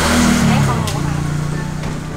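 A motor vehicle engine passing close by, loud at first, its note dropping about half a second in as it goes past.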